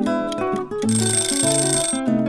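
Background music led by plucked acoustic guitar. About a second in, a bright hissing sound effect with high steady tones joins it for about a second as the quiz countdown runs out.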